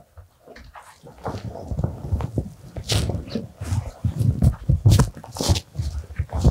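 Rustling and knocking of a coat with a fur collar being pulled on and settled over the shoulders, faint at first and louder and busier after about a second.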